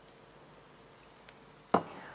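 Almost silent: a faint steady hiss of room tone, with one short louder sound near the end.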